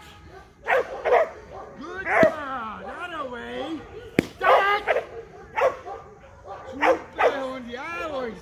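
Young Airedale terrier barking repeatedly in short bursts, with yips and whining calls between the barks, as she works up to a bite. A single sharp crack about four seconds in.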